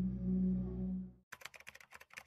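A low steady drone cuts off just over a second in. It is followed by a quick run of keyboard-typing clicks, a typing sound effect.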